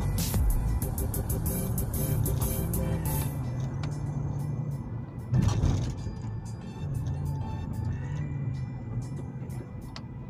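Steady road and engine noise inside a moving vehicle, with music playing over it. There is a brief louder noise about five and a half seconds in.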